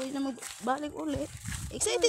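A woman panting out short, repeated "huh" sounds from the strain of walking with a child on her shoulders.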